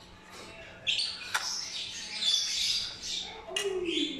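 Pet lovebirds squawking and chirping in harsh, high-pitched bursts, starting about a second in and going on in a run of calls.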